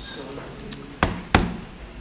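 Two sharp clicks of a computer mouse about a third of a second apart, over faint voices in the background.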